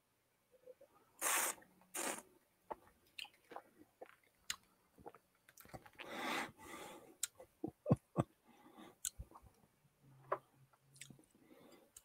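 Quiet sipping and mouth sounds of whisky being tasted: two short slurps about a second and two seconds in, then scattered small clicks of the mouth and glass. A soft rustle partway through comes from headphones being handled.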